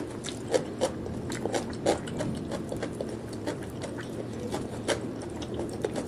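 Close-miked chewing of a bite of raw cucumber: an irregular run of crisp crunches and wet mouth clicks, with a few sharper crunches standing out.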